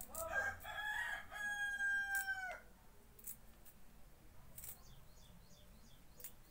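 A rooster crowing once: a few quick notes followed by a long held note that drops in pitch as it ends, lasting about two and a half seconds.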